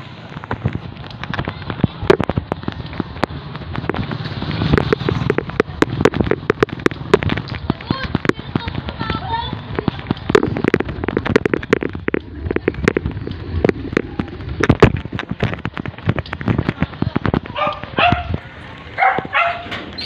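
Wind rushing over a phone microphone carried on a moving bicycle, with many sharp knocks and rattles as the phone and bike bump along the road.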